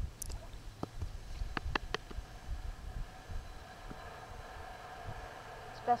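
Outdoor ambience: an uneven low rumble with a faint steady hum, and several sharp clicks in the first two seconds. A voice begins at the very end.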